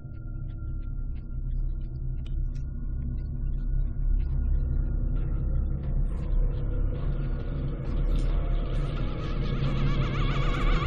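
A low rumbling horror-film drone swells steadily louder, with a rising hiss building over it in the second half, as tension builds toward a shattering crash.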